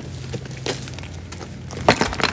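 A few footsteps crunching on loose rock and gravel, the loudest near the end, over a low steady hum.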